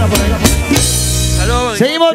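A live band ends a song: the drum kit hits a few closing accents, then the band holds a final chord with a cymbal wash that stops suddenly near the end, and a man's voice starts talking over the microphone.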